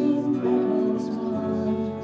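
Slow live worship music led by acoustic guitar, with long held notes.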